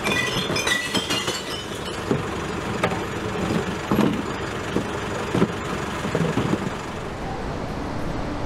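Kerbside recycling lorry's engine idling steadily while plastic recycling boxes are emptied into its compartments: glass and cans clink near the start, then come several separate knocks of boxes and containers being handled.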